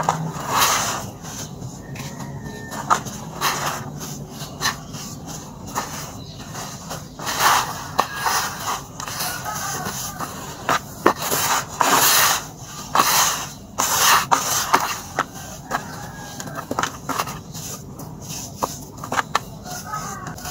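Dry red soil crumbled between the hands and let fall into a plastic tub: repeated gritty rustling pours, some lasting about a second, with a few sharp ticks from small lumps.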